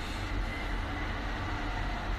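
Steady low rumble with an even hiss: background noise picked up by a phone's microphone, with no one speaking.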